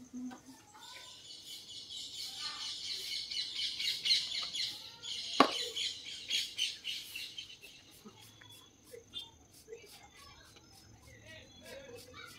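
Small birds chirping busily and high in pitch for several seconds, then thinning to scattered faint chirps. A single sharp click cuts through about five and a half seconds in.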